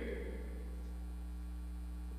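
Steady low electrical mains hum with a faint buzzy series of evenly spaced overtones, constant in level, heard through the microphone feed while the voice is silent.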